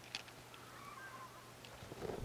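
Faint sounds of a man drinking from a plastic water bottle, with a few soft clicks and a faint wavering squeak in the middle, over a low steady hum.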